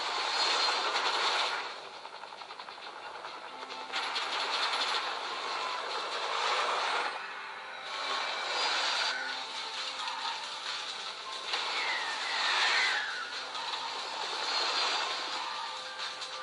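Several video soundtracks playing at once through a smartphone's small speaker: a jumble of rushing, engine-like noise with music mixed in, changing every few seconds.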